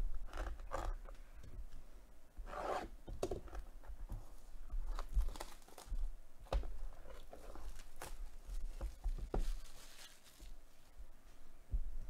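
Plastic shrink wrap being torn and peeled off a cardboard trading-card box, in short irregular rips with crinkling and rubbing of the film against the box.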